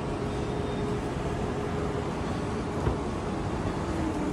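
Steady background rumble of road traffic, with a faint steady hum through most of it and one small tick about three seconds in.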